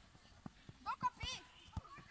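Children's high-pitched voices calling out briefly about a second in, during an outdoor football game, with a few soft scattered thuds.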